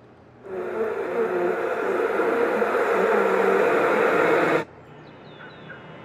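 Opening sound of a film trailer played from a computer: a dense wash with a wavering hum comes in about half a second in, swells, and cuts off abruptly after about four seconds, leaving a faint hiss.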